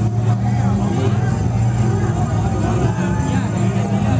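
Loud live hip-hop show sound: heavy steady bass from the club's speakers, with many voices shouting and calling over it.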